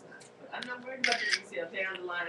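An iPod Touch's camera-shutter sound effect, played from its small built-in speaker about a second in, as a screenshot is taken by clicking the home and power buttons together.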